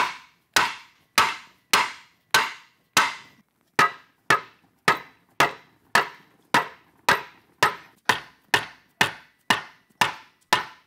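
Mallet blows on a wooden block, driving a sheet-metal flange over in a bench vise. The blows are sharp and steady, about two a second, each with a short ring.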